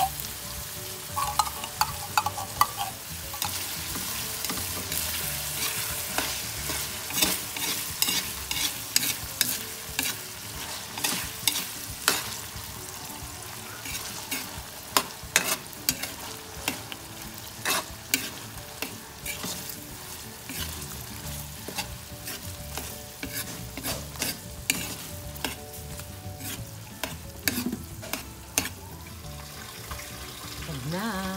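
Metal spatula scraping and clacking against a metal wok as corned beef and sliced hot dogs are stir-fried, with frequent sharp scrapes over a steady sizzle of frying oil.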